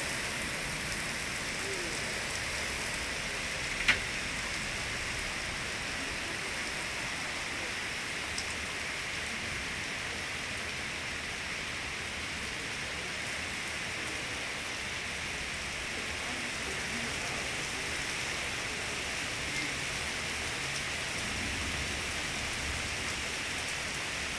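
Heavy rain falling steadily, an even hiss of rain on the street and lawns. One sharp tap about four seconds in.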